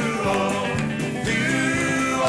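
Live country band playing a dance tune, with electric and acoustic guitars.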